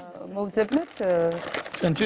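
A clear plastic egg carton crinkling as it is handled, under a woman's speech.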